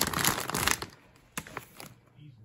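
Plastic tortilla chip bag crinkling as it is handled. A dense rustle lasts for most of the first second, then a few short crinkles follow.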